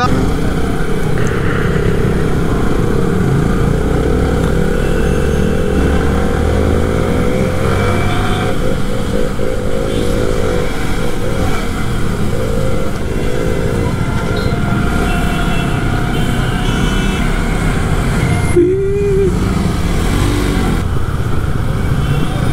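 Yamaha R15 V3's single-cylinder engine running at low speed in third gear through city traffic, its pitch rising and falling with the throttle, over steady wind and road noise.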